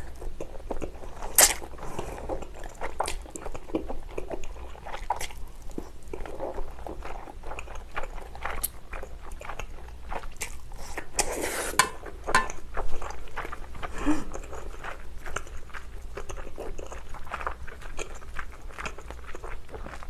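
Close-miked eating of spicy bibim noodles with wide Chinese glass noodles: strands slurped into the mouth and chewed, with many short wet clicks and smacks throughout and a longer slurp about eleven seconds in.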